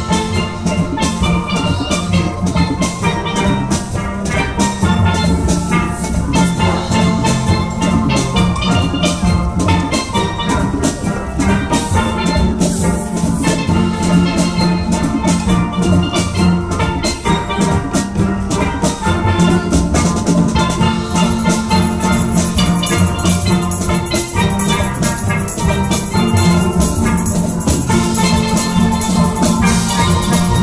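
A live steel band playing: many steelpans ringing out a continuous tune over a steady drum rhythm.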